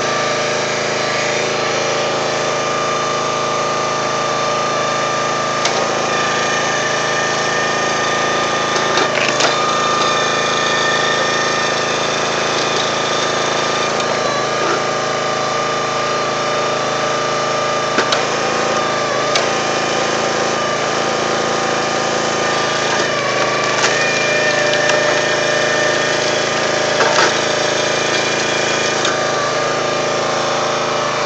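Small engine of a log splitter running steadily at constant speed, its pitch dipping briefly a few times, with a sharp crack about every nine seconds.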